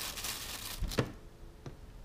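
Thin plastic bag liner crinkling as a hand works inside a plastic litter-disposal pail. The crinkling stops and a sharp plastic click follows about a second in, then a fainter click, as the pail's lid and lock are handled.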